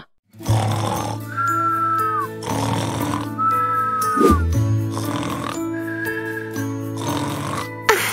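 Cartoon snoring sound effects: rasping inhales, each followed by a high whistled exhale that dips at its end, repeated about three times over light background music.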